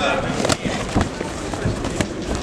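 Kickboxing gloves smacking as punches land during an exchange: a sharp hit about half a second in, another at about a second, and a lighter one later, over voices in the hall.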